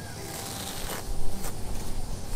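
Straw seeding blanket rustling as it is tugged up from the seeded lawn, its fibres held down by grass grown through it. A low rumble builds from about a second in.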